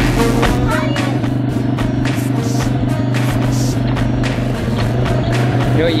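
Polaris Outlaw 50 youth ATV engine idling steadily, with music playing over it.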